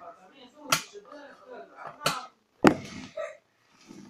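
Metal clasps of a suitcase-style watercolour paint case being snapped open: three sharp clicks, the last and loudest near the end.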